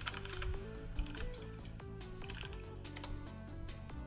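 Computer keyboard typing, a run of quick clicks, over soft background music with a simple stepped melody.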